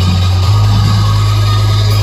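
Loud electronic dance music played through a truck-mounted DJ speaker system, dominated by a deep sustained bass note that shifts pitch about half a second in.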